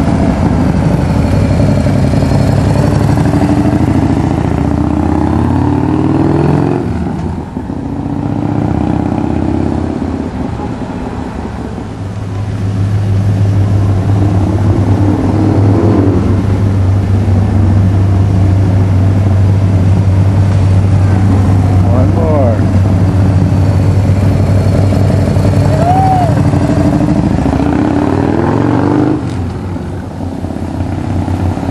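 Harley-Davidson Bad Boy motorcycle's V-twin engine running at low speed as it passes close in the first few seconds and pulls away, fading about seven seconds in; from about twelve seconds a steady low engine hum carries on until near the end.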